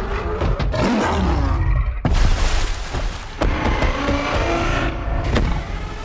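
Movie-trailer sound mix: loud, dense action sound effects layered with score, punctuated by several sharp hits and a hard cut about two seconds in.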